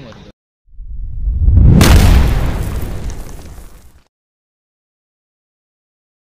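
A loud, deep boom sound effect edited into a transition. It swells for about a second, peaks, fades over the next two seconds, then cuts to silence. Just before it, a moment of match ambience cuts off abruptly.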